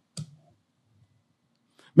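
A pause in a man's speech through a handheld microphone. There is one brief click just after the start, then near quiet with a faint low hum until he begins speaking again at the very end.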